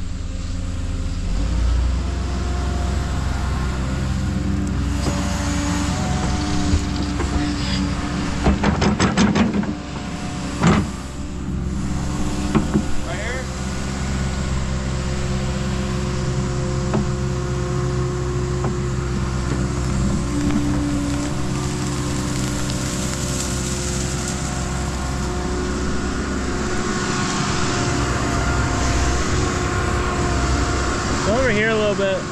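Hyundai 140 excavator's diesel engine running steadily under hydraulic load while it digs. About eight to eleven seconds in there is a quick run of knocks and scrapes from the bucket in the dirt, ending in one loud clank.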